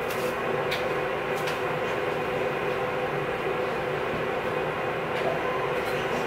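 A steady mechanical hum with hiss, like a running fan or air conditioner, with a few faint clicks.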